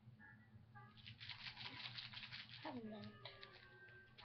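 Faint, quiet voices over a steady low hum: soft murmuring or whispering with some rustling, and a short falling vocal sound about two-thirds of the way through.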